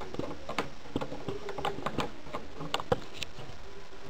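Irregular light clicks and taps of a hand handling a USB cable plug against a laptop, pushing it into the side port, with a few sharper clicks about half a second, two and three seconds in.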